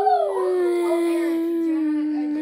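A long howl held on one note, sinking slowly in pitch.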